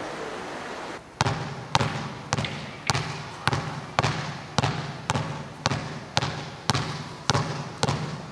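A basketball dribbled steadily on a parquet gym floor, bouncing about twice a second, each bounce echoing around the hall. The bouncing starts about a second in, after a steady hiss.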